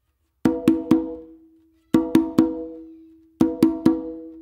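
Open tones on a Meinl conga, struck with alternating hands (non-dominant, dominant, non-dominant) in quick groups of three, the group played three times about a second and a half apart. Each stroke rings with a clear pitched tone that fades out: the three opens that begin the tumbao pattern.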